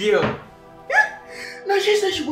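A man's wordless vocal exclamations, one falling at the start and one rising about a second in, over steady background music.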